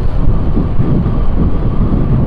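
Steady low rumble of wind buffeting the microphone on a moving motorcycle, with the motorcycle's engine and road noise beneath it.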